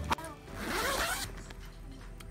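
A tent zipper pulled in one stroke of under a second: a zipping hiss that swells and fades, just after a short click.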